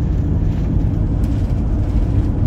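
Steady low road and engine rumble of a Mercedes diesel campervan cruising on the highway, heard from inside the cab.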